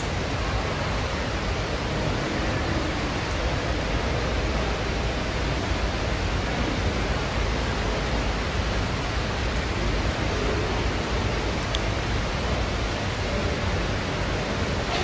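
Steady, even rushing noise with a low rumble beneath it, unchanging throughout and with no voices.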